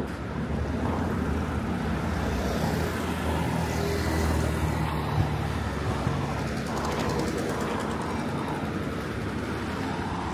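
Street traffic: car and motorbike engines running as vehicles pass close by, a steady low rumble that grows a little louder about halfway through.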